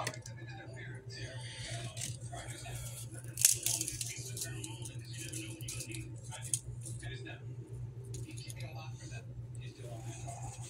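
Cooked turkey bacon being broken by hand and placed on burger patties: scattered small cracks and handling clicks, the sharpest about three and a half seconds in, over a steady low hum.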